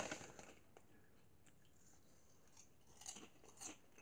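Mostly near silence, then a few faint crunches from someone chewing kettle-cooked potato chips, about three seconds in.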